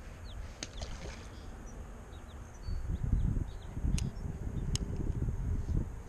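Wind buffeting the microphone in low, uneven gusts from about three seconds in, with faint bird chirps and a few sharp clicks.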